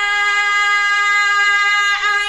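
Male Quran reciter's voice holding one long, steady melodic note on a drawn-out vowel in tajweed recitation, breaking briefly right at the end.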